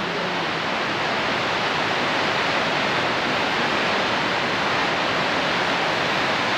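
Steady, even rushing of Upper Whitewater Falls, a high cascading waterfall heard from across the gorge.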